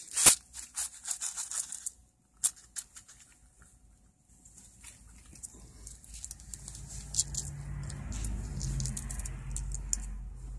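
A paper penny-roll wrapper being torn open by gloved hands, with a sharp snap just after the start and a run of paper crackles for the next two seconds. The stack of pennies then shifts in the hand with light clicks, while a low rumble builds through the second half.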